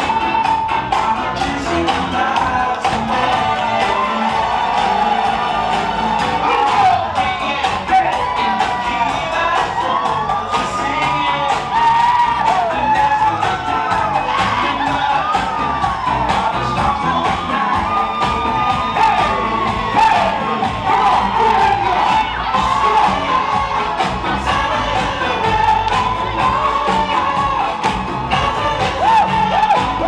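Music with singing over a crowd of guests cheering, shouting and whooping.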